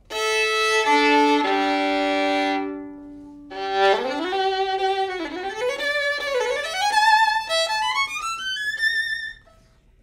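Fiddlerman Master violin bowed solo: long ringing double-stopped fifths across the open strings, stepping down from high to low. Then a melodic phrase with vibrato that climbs steadily to a high held note near the end.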